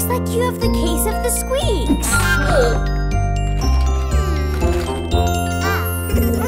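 Children's song backing music with bright jingling bell-like tones over a steady bass line. A child's voice speaks over it.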